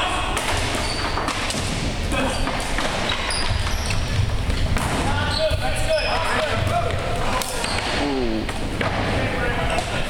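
Floor hockey in a gymnasium: sticks clacking and the ball knocking on the wooden floor, with players shouting, all echoing in the hall.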